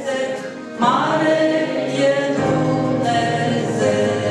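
A woman singing a Romanian gospel hymn into a microphone; her voice dips briefly in the first second, then comes back in strongly and carries on in long held notes.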